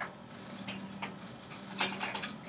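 Several short runs of rapid, high-pitched clicking, with a louder burst of clicks near the end, over a faint steady hum.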